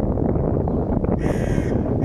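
A crow cawing once, a single harsh call of about half a second, about a second in, over a steady low background rumble.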